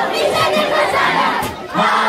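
A crowd of young children shouting and cheering together, loud and dense, with a brief dip about one and a half seconds in.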